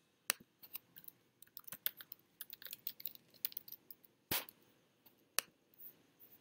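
Typing on a computer keyboard: a quick run of key clicks over the first four seconds, then one louder click and two separate clicks near the end.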